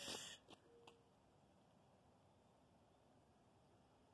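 Near silence after a hushed 'shh'. A little under a second in comes a single short, faint hoot, an owl calling.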